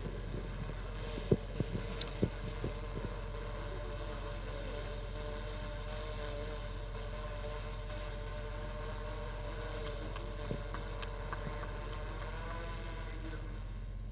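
Steady low electrical hum under a faint background, with a few sharp clicks in the first few seconds.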